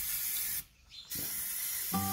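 Aerosol livestock marking paint hissing out of a spray can onto a cow's hide, in two bursts: the first stops a little over half a second in, the second starts just after a second in.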